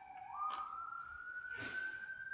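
A siren's long wail: the single tone sinks low, steps up sharply a moment in, then climbs slowly and holds high.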